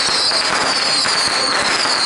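A long string of firecrackers going off, a continuous dense crackle of rapid pops.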